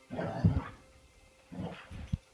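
Brittany spaniel vocalizing in rough play: two short bursts about a second apart, the first near the start and the second about one and a half seconds in, with low thumps under them.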